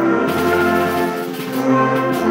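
A concert band of woodwinds and brass, mixed from separate home recordings, plays sustained chords. The sound dips briefly about one and a half seconds in, then moves to a new chord.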